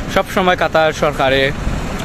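A man talking, over a steady low rumble of road traffic.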